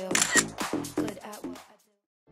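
Camera shutter and flash sound effect clicking once just after the start, over background music that fades out near the end.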